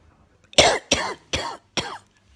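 A man coughing four times in quick succession, about two coughs a second, starting about half a second in.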